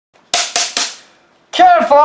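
Three sharp, cracking percussive hits in quick succession, about a quarter second apart, each dying away quickly. A voice starts speaking about a second and a half in.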